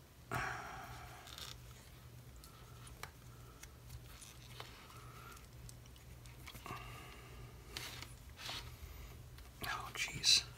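Hard plastic casing of a small USB aquarium air pump creaking, scraping and clicking as hands twist and pry at it to take it apart. A rasping scrape comes about a third of a second in, then scattered clicks and more scraping in the second half.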